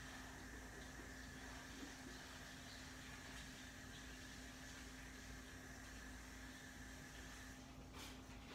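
Near silence: faint room tone with a steady low hum and a thin high whine that stops shortly before the end.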